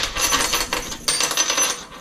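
A metal fishing spoon lure with its hook and split ring clinking and jingling as it is handled, in a quick run of light metallic clicks.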